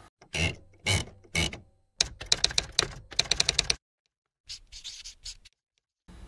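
Clacking sound effect like typewriter keys: three single strikes about half a second apart, then a fast run of keystrokes lasting almost two seconds, and a few fainter strokes near the end.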